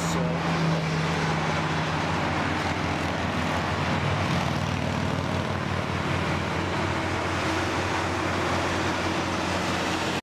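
Steady interstate highway traffic: a continuous wash of tyre and engine noise from vehicles passing below, with a low engine drone running underneath.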